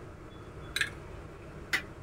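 Two short, light clicks about a second apart: a plastic spoon tapping against a steel mixer-grinder jar as tamarind juice is poured in.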